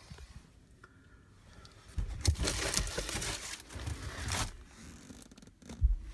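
Paper documents being handled: rustling and crinkling in irregular bursts from about two seconds in, then a single thump near the end.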